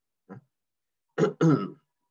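A person clearing their throat: a faint short sound, then a louder throat-clear a little over a second in.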